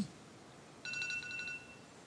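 A phone's timer alert sounding once for about a second: a steady electronic beep with a fluttering upper edge. It is signalling that the allotted time is up.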